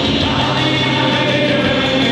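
Live rock band playing, with a male lead singer singing loudly over the band, recorded from the audience.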